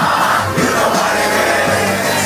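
Loud live hip-hop music from a concert sound system, with a crowd yelling over it.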